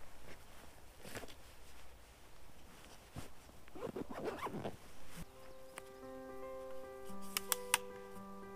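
Zipper and rustling from a camera backpack being opened and rummaged through, busiest about four seconds in. Soft background music with held notes comes in about five seconds in, and a few sharp clicks sound near the end.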